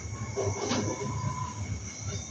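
Marker squeaking on a whiteboard as words are written: a few short squeals, the longest in the middle.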